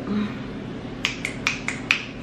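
Fingers snapping five times in quick succession, about four snaps a second, starting about a second in.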